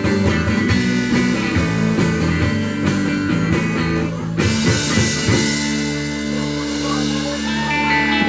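Live rock band playing electric guitars and drum kit, then ending the song: a crash cymbal and a final chord hit about four seconds in, and the chord is held ringing.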